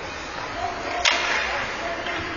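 Ice hockey play on a rink: one sharp crack of stick or puck about halfway through, followed by a brief scraping hiss, over rink background noise and faint voices.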